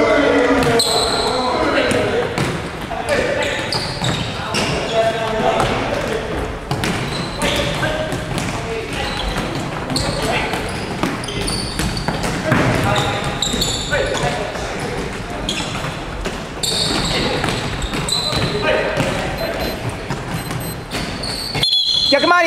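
Futsal balls being kicked and bouncing on a wooden gym floor, with repeated short thuds echoing in a large hall, over the chatter and calls of players.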